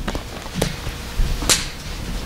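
A plastic water bottle is handled, its cap screwed on and the bottle set down on a wooden pulpit: three sharp clicks and crackles, the loudest about a second and a half in.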